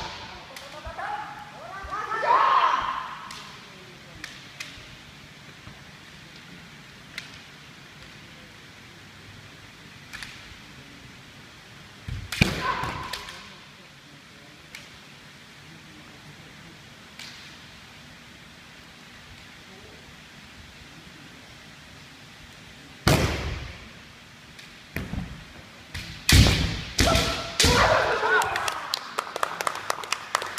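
Kendo sparring: sharp cracks of bamboo shinai strikes and stamping thuds on a wooden floor, each exchange with loud shouted kiai. The exchanges come near the start, about twelve seconds in, and in a quick flurry over the last few seconds, with near-quiet pauses between.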